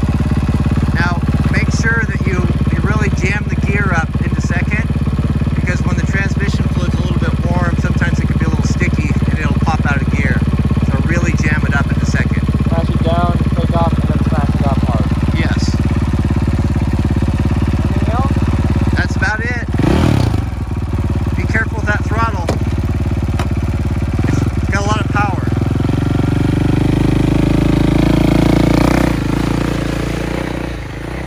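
Dirt bike fitted with a snow-bike track kit, its engine idling steadily, then revving up and pulling away near the end.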